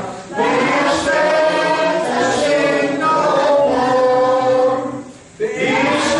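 A congregation singing a hymn together in sustained, held notes, with short breaks between phrases about a quarter second in and again near the end.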